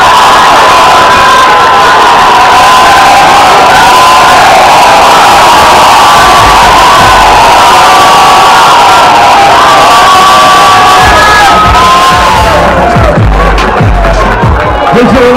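Large crowd cheering and shouting loudly at the close of a boxing bout, with many overlapping whoops and yells; the cheering dies down near the end.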